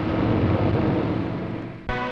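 A steady, noisy rumble, like vehicle or engine noise, that fades and then cuts off abruptly near the end as music starts.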